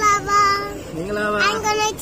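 A young child's voice in drawn-out, sing-song syllables, with a lower voice joining briefly about halfway through.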